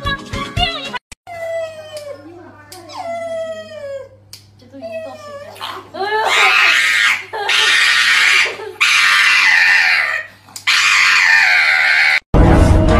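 Music for about the first second, then a run of whining cries that fall in pitch. From about halfway, loud high-pitched screaming cries come in bursts of a second or more with short breaks between them.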